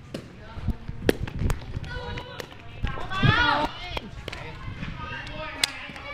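Sharp taps of a shuttlecock being kicked back and forth in a rally, mixed with quick footsteps on the court. Players shout out a couple of times mid-way.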